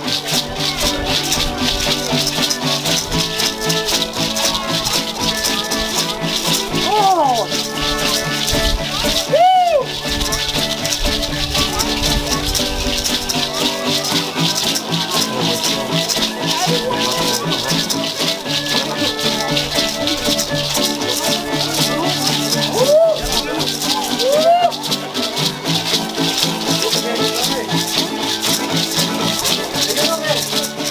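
Dancers' hand rattles (sonajas) shaken in a fast, steady rhythm over dance music with sustained string tones. A few short rising-and-falling calls rise above it.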